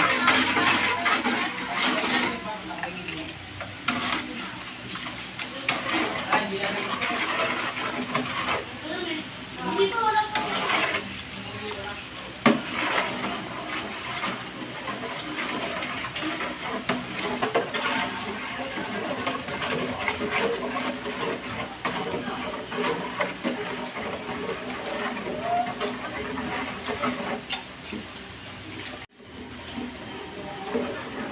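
Long metal spoon stirring a thick liquid ube mixture in an aluminium stockpot, with repeated clinks and scrapes of metal against the pot and liquid swishing.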